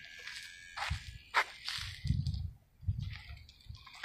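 Footsteps and handheld camera handling noise: irregular soft thumps with a few short clicks and rustles, from someone walking.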